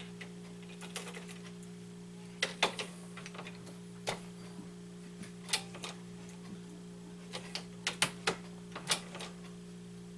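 Scattered light clicks and clacks of a shotshell reloading press being worked by hand as a loaded buckshot shell is crimped, in irregular clusters.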